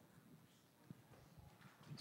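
Near silence: room tone with a few faint, soft knocks, the clearest a little under a second in.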